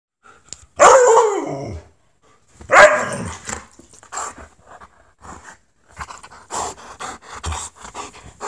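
A husky calling out for attention: two loud, drawn-out barking calls, about a second and three seconds in, the first sliding down in pitch. A run of shorter, quieter vocal sounds follows.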